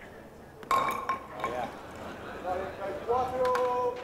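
A bolo palma ball clacks against the wooden pins with a sharp, ringing knock about two-thirds of a second in, and a second knock follows a moment later. A man's voice then calls out briefly, and one held call comes near the end.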